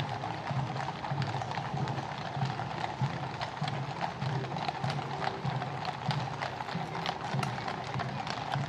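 Many cavalry horses' hooves clip-clopping at a walk on a road surface, a dense, overlapping run of hoof strikes. Music plays in the background.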